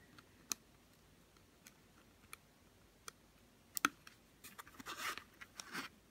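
Faint handling sounds of fingers on a flat flex cable and its ZIF connector on an LCD controller board: a few small sharp clicks, the loudest a quick pair about two-thirds of the way in, then scratchy rustling near the end.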